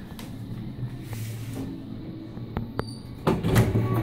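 Otis passenger elevator at rest with a steady low hum, then two sharp clicks about two and a half seconds in. Its two-speed sliding doors then open with a louder rumbling slide near the end.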